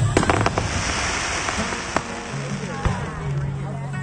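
Aerial fireworks: a shell bursts with a loud bang and a quick cluster of cracks at the start, followed by a hissing spray of sparks for a couple of seconds and two more sharp bangs about two and three seconds in.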